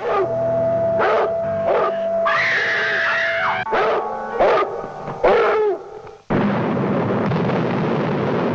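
A dog snarling and barking in short cries over a held music drone, with one longer high wavering cry in the middle. About six seconds in, a sudden explosion sets off a loud, continuing rush of noise.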